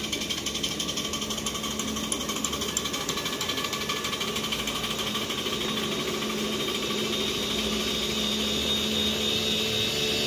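Miniature park railway train approaching and passing: a rapid, even mechanical rattle over a steady hum, growing a little louder in the second half.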